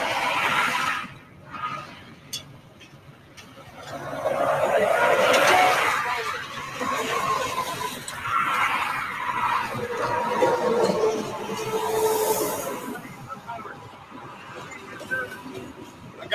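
Indistinct voices, too unclear for words, over steady highway traffic noise.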